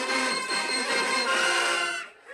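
High school marching band playing in the stands, flutes and brass holding sustained high notes with little bass underneath.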